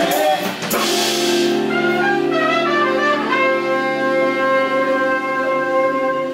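Live funk band's horn section of trumpets and saxophones closing a song: a cymbal crash about a second in, a short rising run of notes, then one long held final chord.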